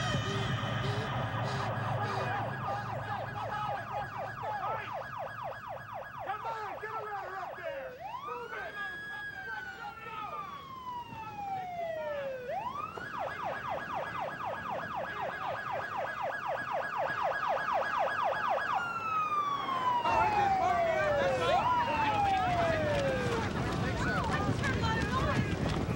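Emergency vehicle siren switching between a rapid warbling yelp and a slow wail that rises and falls, growing louder near the end.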